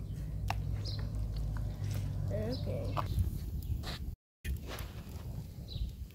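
Wet squelching of hands kneading chicken pieces in a bowl of green marinade, over a low steady hum, with occasional small bird chirps. The sound cuts out sharply about four seconds in and comes back as scattered short clicks.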